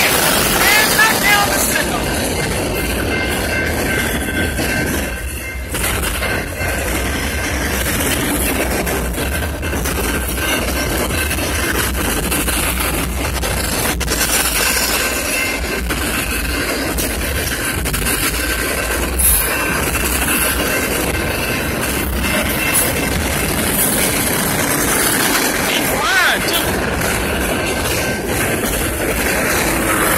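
Freight cars of a Kansas City Southern manifest train rolling steadily past a grade crossing, with continuous wheel and rail rumble and clatter. Under it, a steady ringing from the crossing's warning bell.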